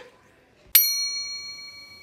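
A single bright bell ding, struck once about three-quarters of a second in and ringing out over about a second and a half.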